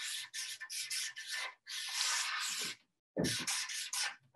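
Felt-tip marker drawing on a flip-chart pad: a run of short rubbing strokes, one longer stroke of about a second in the middle, then more short strokes near the end as letters are written.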